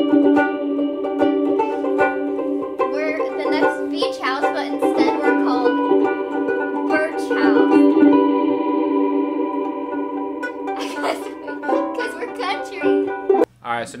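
Vangoa banjo ukulele strummed through a transducer pickup into a Strymon BigSky reverb pedal: chords that hang and blur together in a long, washed-out reverb. A second banjo ukulele plays along.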